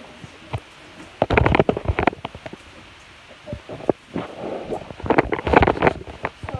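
Phone microphone handling noise: rubbing, scraping and small knocks as the phone is moved about. It comes in two bursts, about a second in and again near the end, with a quieter gap between.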